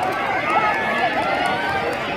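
Grandstand crowd cheering and yelling during a race, a steady wash of many voices with scattered higher shouts.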